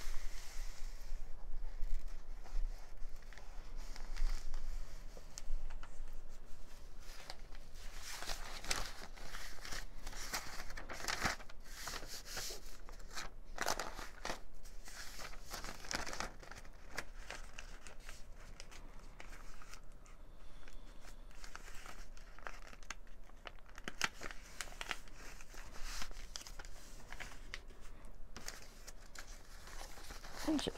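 Paper rustling and crinkling as sheets of printed paper and a paper envelope are handled, unfolded and folded flat: a run of short rustles, busiest in the middle.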